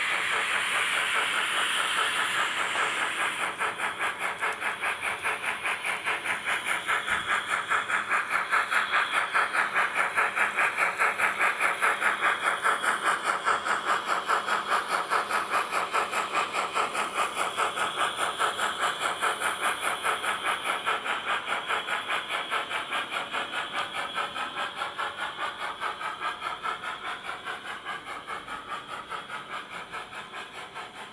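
Steam locomotive sound of a departing train. A steam hiss comes first, then an even exhaust chuff starts about three seconds in at about three beats a second. The chuffing grows louder to the middle and fades toward the end as the train moves away.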